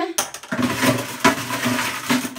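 Water splashing and sloshing in a glass bowl fitted with a metal mesh strainer as a hand drops something in, starting with a sharp splash just after the start.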